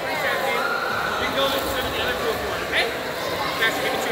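Background voices and chatter in an indoor pool hall, over a steady wash of room noise.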